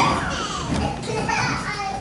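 Many children's voices chattering and calling out over one another, with a sharp knock at the very start.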